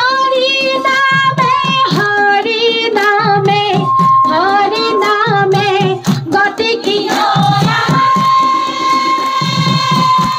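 A group of women singing together through microphones, with hand-clapping and a drum keeping the beat; some notes are held long.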